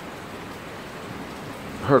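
Heavy rain falling, a steady even hiss with no separate drops or knocks standing out. A man's voice starts right at the end.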